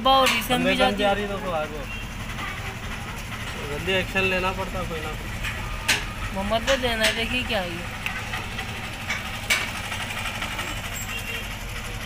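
Indistinct voices of onlookers talking in short bursts over a steady low, engine-like rumble, with a couple of sharp clicks.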